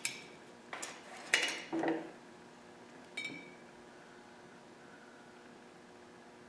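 Glass mason jars clinking against metal as they are opened and fuel line pieces are taken out with pliers: a few sharp clinks in the first two seconds, then one ringing clink about three seconds in.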